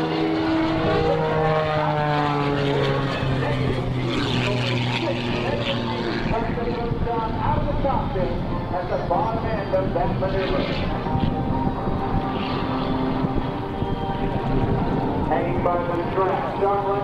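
Piston engine and propeller of an aerobatic biplane built on the Pitts Special, running hard through a manoeuvre. Its pitch glides slowly downward over the first several seconds, then holds steadier.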